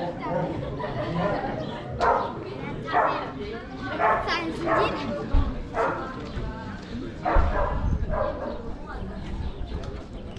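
Voices of passers-by chattering, with a dog barking repeatedly in short, loud barks.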